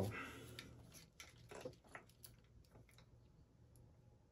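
Faint, scattered small clicks and light rustling of thin wires and small plastic plug connectors being handled, over a faint low steady hum.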